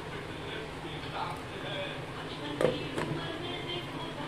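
A glass pan lid set down onto a metal cooking pan, giving one short clink about two and a half seconds in, over a low steady background.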